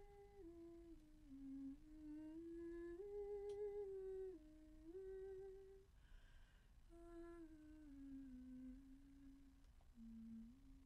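A woman's voice humming a slow, wordless melody of long held notes that step up and down, soft and close, with a pause about six seconds in before the next phrase.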